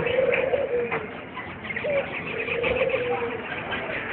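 Caged doves cooing. Each coo is a short upward note and then a longer rolling note, and it comes twice, about every two seconds. Small birds chirp faintly and high in the background.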